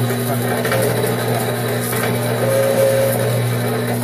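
Metal-cutting bandsaw running steadily, its blade cutting through steel angle iron with a constant motor hum.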